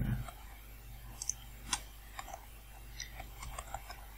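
Computer keyboard being typed on: a dozen or so light, irregular key clicks, more of them in the second half.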